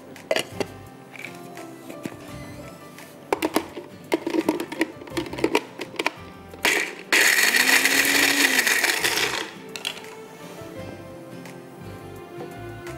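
Small press-top electric chopper grinding cashews into powder: a short burst about six and a half seconds in, then a steady run of about two and a half seconds. A few sharp knocks come before it as the chopper is handled.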